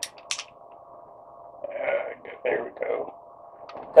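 Sharp metallic clicks from a Kel-Tec P11 9mm pistol being handled, two close together at the start and a faint one near the end, as it is shown to be empty. A few short mumbled words fall in between, over a faint steady hum.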